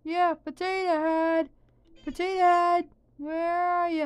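A high-pitched voice making three drawn-out, sing-song vocal sounds, each syllable held steady on one note rather than spoken as words.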